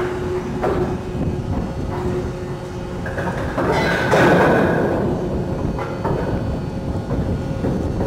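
Heavy anchor chain clanking and scraping against steel as a hydraulic deck crane shifts it, over a steady machinery rumble. A louder grinding scrape with a high screech comes about three to four seconds in.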